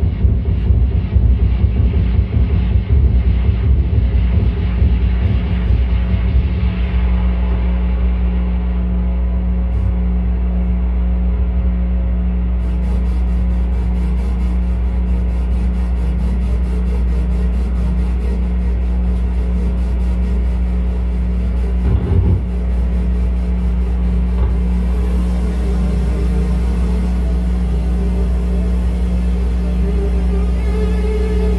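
Live electronic drone music from a synthesizer and cabled effects gear: a heavy, sustained low drone that wavers unevenly at first, then settles into steady held tones. A brief thump comes about two-thirds of the way through.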